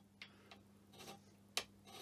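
Hand scraper strokes on the cast-iron flats of a lathe saddle, pull scraping: short sharp scrapes about two a second, five in all, at uneven spacing. A faint steady hum lies underneath.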